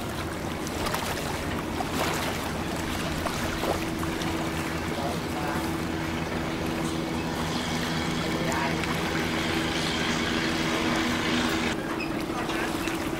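A small boat's engine running steadily, a low hum that firms up a few seconds in, over the wash of water and wind.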